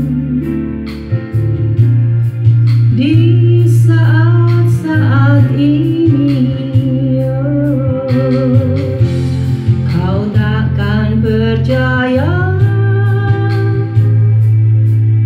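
A woman singing a slow song with vibrato into a handheld microphone over backing music with guitar and a steady beat. Her long notes waver, and about twelve seconds in she glides up to a higher held note.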